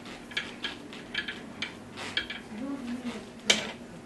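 Light metal clicks and scrapes from a lathe spindle's throw-off being unscrewed by hand to force a tapered attachment off the shaft, with one sharper click near the end.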